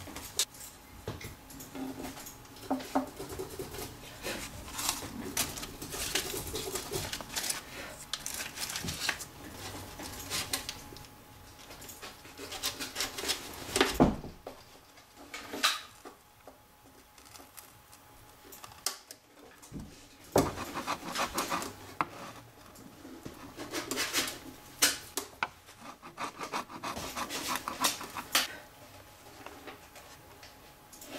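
Scraping and rubbing on the spruce top of an old violin as a small hand tool takes an old paper patch off a reopened crack, in irregular clusters of short strokes, with one louder knock about halfway through.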